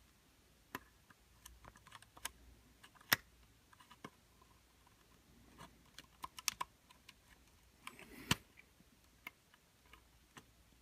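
Faint, irregular small clicks and taps of needle-nose pliers working a nylon zip tie into a slot in a plastic quadcopter body, with two sharper clicks about three seconds in and near the end.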